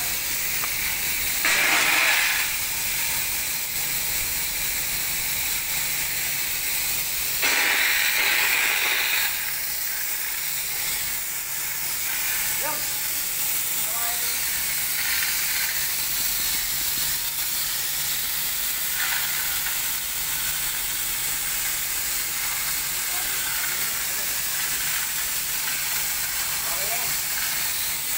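Fire sprinkler head on a short riser pipe discharging, a steady loud hiss of water spray under system pressure after its heat element was set off with a torch. The spray is louder for a second or two about two seconds in and again about eight seconds in.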